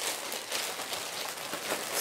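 Thin plastic bag crinkling steadily as it is handled and opened.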